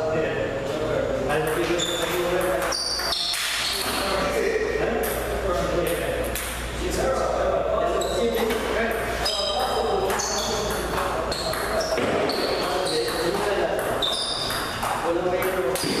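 Table tennis being played: a ping-pong ball clicking off the paddles and table in short hits, with people talking in the background throughout.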